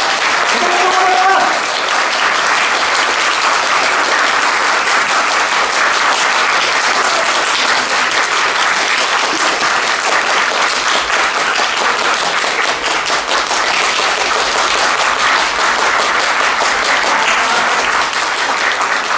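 Audience applauding, steady and dense clapping that holds at an even level throughout. A man's voice trails off in the first second or two.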